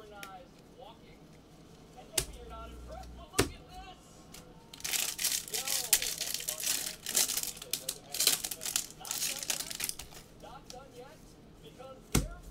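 Foil wrapper of a Bowman Draft jumbo pack of baseball cards being torn open and crinkled by hand: a few seconds of crackly rustling in the middle, after two sharp clicks.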